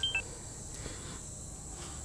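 A quick run of short electronic beeps from a mobile phone as its keys are pressed, then a faint steady background hum with a thin high whine.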